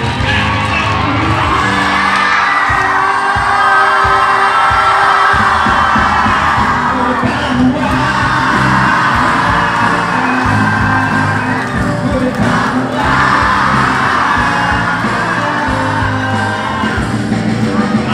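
A band playing with singing, an audience cheering and whooping along.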